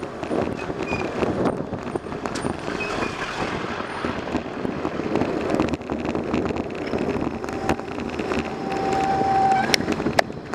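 Wind and road noise from a bicycle ride in city traffic, with motor vehicles running close ahead. Near the end a steady brake squeal lasts about two seconds as the bike slows toward a stop, followed by a few sharp clicks.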